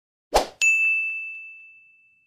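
Intro sound effect: a short noisy thump, then a bright, bell-like ding that rings one high tone and fades away over about a second and a half.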